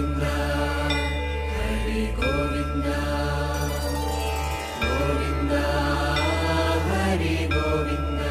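Devotional music: a chanted Hindu mantra sung over a steady low drone, in phrases of a second or two.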